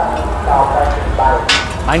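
Voices in a busy food stall, with a metal spatula scraping and knocking on a large flat steel griddle, one sharp stroke about one and a half seconds in.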